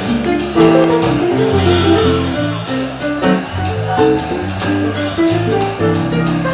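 Live jazz combo playing: archtop guitar carrying the melody over a bass line, with cajon and cymbals keeping time and piano in the band.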